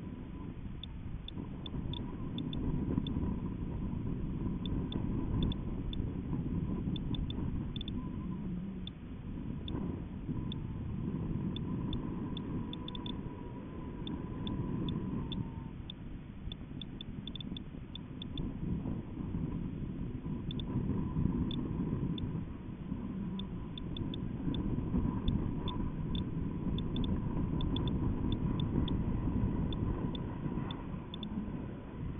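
Airflow rumbling on the microphone of a camera hanging from a high-altitude balloon: an uneven low rumble that swells and fades every few seconds, with a faint steady whine and scattered light ticks over it.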